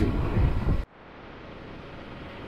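Low rumble of the boat under way, cut off suddenly a little under a second in, then the steady hiss of a shortwave radio receiver tuned in ahead of a broadcast.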